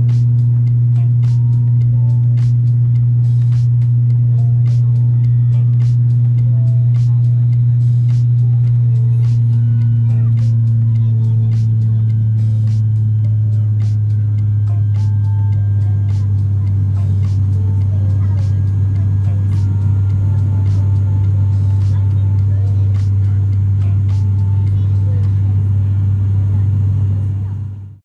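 Turboprop airliner's propellers and engines droning steadily, heard inside the cabin, with a strong low hum whose pitch sinks slightly partway through. It fades out near the end.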